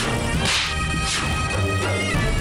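Dramatic TV-serial background score of held notes, cut by three swishing whoosh effects: one at the start, the loudest about half a second in, and another just over a second in.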